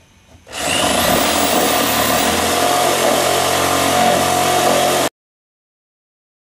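Reciprocating saw cutting relief cuts into a laminated white cedar propeller blank. It starts about half a second in, runs steadily and loudly, and stops abruptly about five seconds in.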